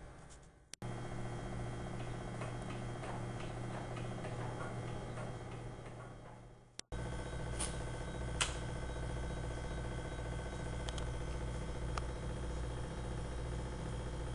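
Steady low hum with faint scattered ticking and a few sharp clicks, cut off abruptly twice, about a second in and near the middle.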